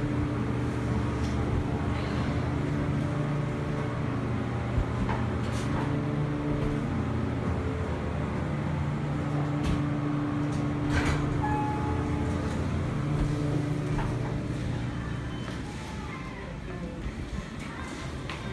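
Montgomery hydraulic elevator car riding down, heard from inside the cab: a steady hum and rumble with a few light clicks, easing off near the end as the car comes to a stop.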